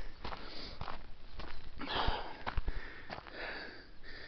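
A hiker breathing audibly in several breaths while walking uphill, with a few footsteps on a dirt road.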